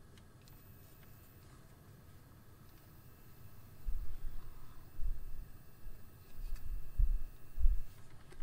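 Quiet at first, then from about halfway a string of irregular dull low bumps and rumbles of handling, the loudest near the end.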